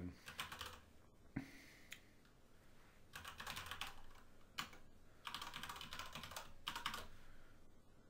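Typing on a computer keyboard in short runs of quick keystrokes, entering a username and password. There is a brief run at the start, a pause of about two seconds, then longer runs near the middle and toward the end.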